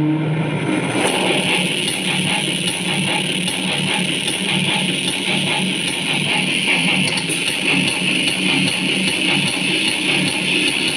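Rock-style gaming music with guitar and drums played loud through a Zebronics Zeb-Action portable Bluetooth speaker, streamed from a phone as a speaker audio test.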